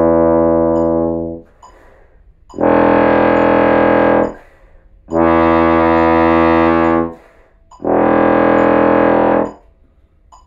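Bass trombone playing long low tones: a held note fades out about a second in, then three more sustained notes of about two seconds each on about the same low pitch, with short breaths between them.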